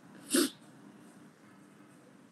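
A man's single short, stifled sneeze into his hand, about a third of a second in.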